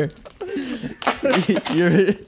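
Mostly men's voices: a quieter first second with light rustling, then talking or laughing in the second half.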